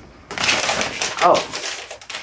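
Paper and envelopes rustling and crinkling as they are handled, for just under a second, followed by a short spoken "Oh".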